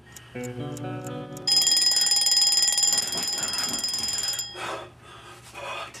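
Soft guitar music, then an alarm clock ringing loudly with a high, fast trill from about a second and a half in. The ringing lasts about three seconds and then stops.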